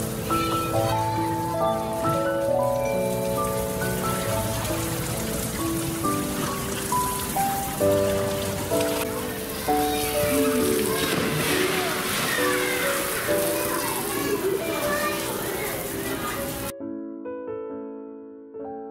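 Splashing and churning pool water from a polar bear diving in, under soft background piano music; the water sound cuts off abruptly near the end, leaving only the piano.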